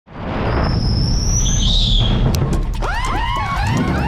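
A race car's engine rumbling as it pulls into the pit, then from about three seconds in nitrogen-powered impact guns whirring in quick rising-and-falling whines, one after another, as the changers spin off the lug nuts.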